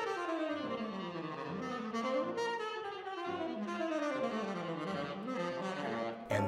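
Tenor saxophone playing an improvised jazz solo: a continuous line of notes that slides up and down without a break.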